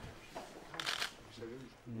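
A short rustle of paper or card being handled about a second in, with low voices murmuring around it.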